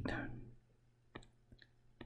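A few faint, sharp taps of a stylus on a tablet screen as a small square is drawn: one about a second in, a pair shortly after, and another near the end.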